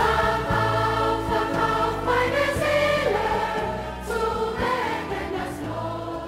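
A large children's choir singing in many voices, carried by sustained instrumental accompaniment with a steady bass.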